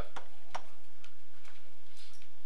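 A series of light clicks, about two a second, over a steady low hum.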